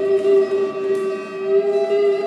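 Hawaiian steel guitar sustaining a long, slightly wavering note with the band's chord, with a faint upright bass underneath.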